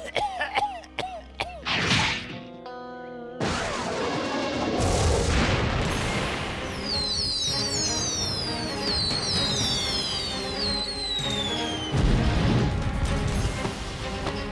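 Cartoon battle sound effects: a barrage of missiles whistling down in many overlapping falling whistles over dense explosion noise, with a louder blast about twelve seconds in, all over background music. A brief character laugh opens it.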